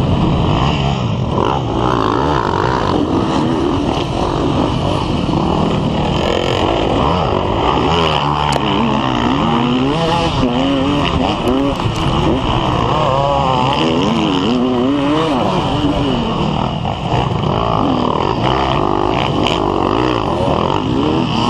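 Dirt bike engine revving up and down over and over as it is ridden hard on rough ground, with other dirt bikes running close by.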